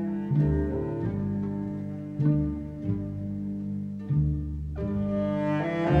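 Traditional Irish instrumental music: low bowed strings hold sustained notes over a deep bass note that returns about every two seconds, and higher parts come in near the end.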